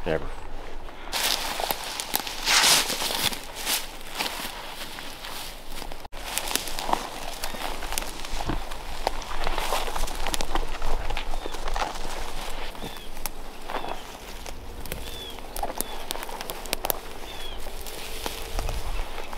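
A person's footsteps walking at an irregular pace over the ground. A few short high chirps come in over the last few seconds.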